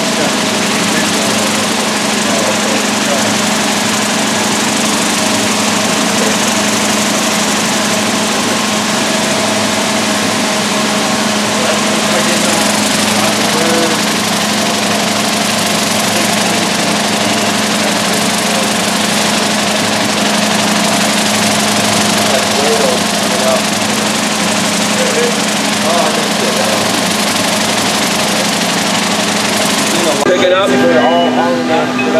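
Vibratory finishing bowl running, its load of triangular ceramic tumbling media churning round the bowl with a steady, loud rattling hiss over a constant machine hum.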